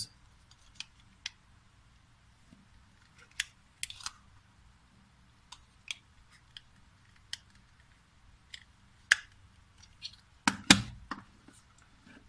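Plastic clicks and rattles of a three-AA battery box being handled and its snap-on cover slid shut, a dozen or so separate small clicks, with a louder clatter near the end as the box is set down on a wooden table.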